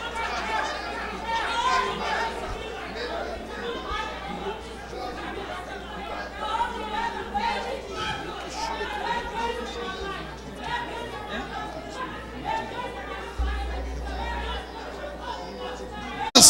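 Many voices praying aloud at once in a large hall: a congregation's overlapping, indistinct prayer, with a steady low hum beneath.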